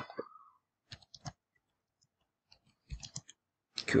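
Computer keyboard keystrokes: a few separate key clicks about a second in, then a quick run of clicks near the end.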